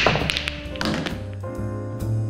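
Pool balls clacking: a sharp strike at the start, then a spread of fainter clicks fading over about a second, like a rack being broken. Jazz background music plays under it.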